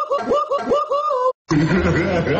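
A baby laughing in quick, high-pitched bursts, about five a second, the last one drawn out. It cuts off suddenly just past the middle, and after a brief silence a different, lower-pitched sound with a steady hum takes over.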